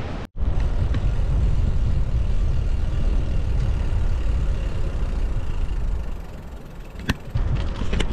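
Wind buffeting the microphone of a camera carried on a moving bicycle: a steady low rush. It cuts out for an instant just after the start, eases near the end, and a single click comes about seven seconds in.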